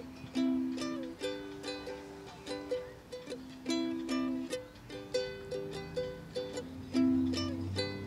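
Ukulele played solo, strummed and picked in a run of short ringing chords, two to three a second: the introduction to a song.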